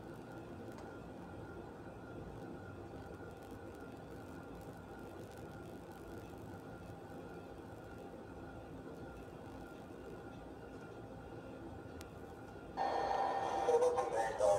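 Steady, low room hum with faint steady tones. Near the end, louder audio from a video played over loudspeakers cuts in abruptly, with several pitched tones.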